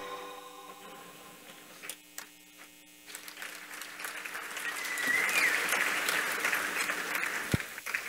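Audience applauding in a hall, swelling from about three seconds in and holding until just before the end, over a faint steady electrical hum.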